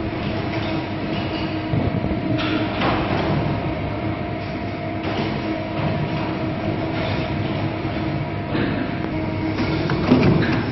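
Computerized side and heel lasting machine running: a steady mechanical hum holding a few pitches, with several brief sharper sounds at irregular intervals over it.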